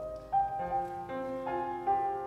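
Grand piano playing a slow hymn-style passage, a new note or chord struck about every half second.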